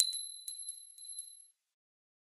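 Bright bell-like ding of a logo sound effect, struck once and ringing out over about a second and a half, with four light tinkling strikes as it fades.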